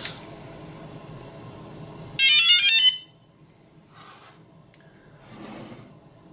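DJI Phantom 2 Vision Plus quadcopter powering on: a quick run of high electronic start-up tones, stepping in pitch and lasting under a second, about two seconds in.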